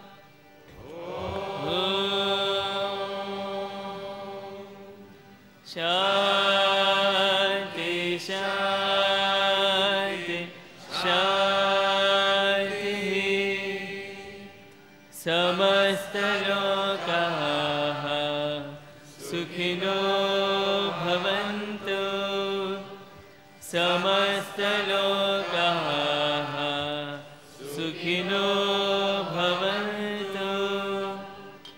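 Devotional chanting sung in long, held phrases, the voices gliding between notes and pausing briefly for breath about every three to four seconds.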